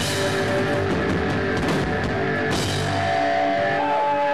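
Stoner-metal band playing live: distorted electric guitars, bass and drum kit, loud. About three seconds in the drums drop out and held guitar notes ring on.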